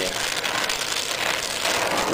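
Oxy-acetylene torch flame hissing steadily as it heats a dent in a steel two-stroke expansion chamber. The pipe is held under air pressure so that the hot spot pushes back out.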